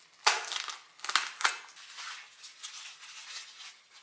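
Kitchen knife slitting open a plastic meat package, with the plastic crinkling: a sharp cutting stroke just after the start and two more about a second in, then softer rustling as the bag is handled.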